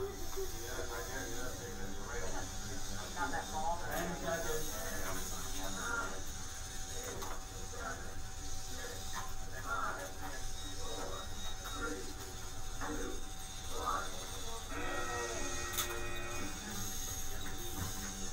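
Indistinct voices of several people talking in a room over a steady low hum, with a brief steady whine about fifteen seconds in.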